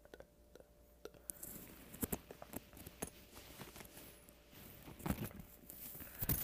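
Faint rustling and scattered small clicks of handling: the jacket's fabric and zipper and the earphone cable being moved about, with a few sharper ticks about two seconds in and again near the end.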